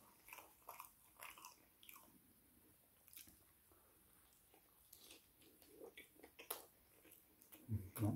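Faint, close-up chewing and biting of a chicken burger: a scattered run of short, soft wet mouth clicks.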